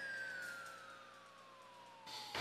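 Faint electronic tone gliding steadily downward over about two seconds, heard as the remote call link with the doctor drops out mid-sentence.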